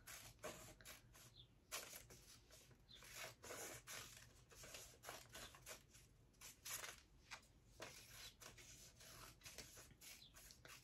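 Scissors cutting a paper pattern piece into strips: faint, irregular snips with paper rustling as it is handled.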